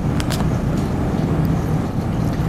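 Steady low background rumble with no clear pitch, with two brief clicks about a quarter of a second in.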